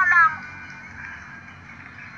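A child's high-pitched voice, its pitch bending, trailing off about half a second in, then only a faint steady hiss.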